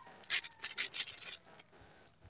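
Faint rustling and scratching of a plastic courier pouch being handled, a few short scrapes in the first second and a half, then near silence.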